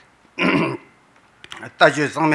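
A man clears his throat once, a short, loud rasp about half a second in, close to the microphone; his speech resumes near the end.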